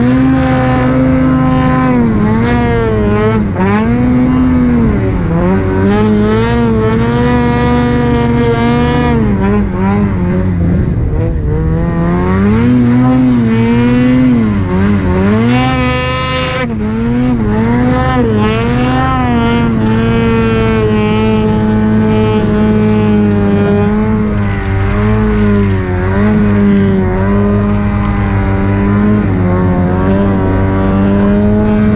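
Snowmobile engine, heard close from the rider's seat, revving up and down again and again as the sled ploughs through deep powder snow; the pitch rises and falls every second or two.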